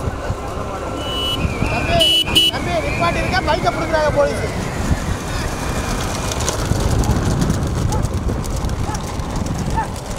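Steady rumble of motorbike and car engines, with road noise, as vehicles chase racing bullock carts, and men shouting over it. A short high-pitched tone sounds about one and a half to two and a half seconds in.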